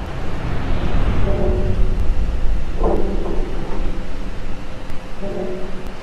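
Animated logo intro soundtrack: a loud, deep rumbling swell with short pitched synth notes about a second in, three seconds in, and again near the end.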